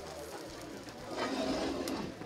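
A heavy metal skillet scraping across the floor of a wood-fired oven as it is slid in. The scrape grows louder about a second in, with a sharp click near the end.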